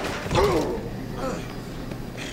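Scuffle: a man lets out one short strained groan, rising then falling in pitch, as he is shoved against a laundromat dryer. Fainter rustling and scuffling follows.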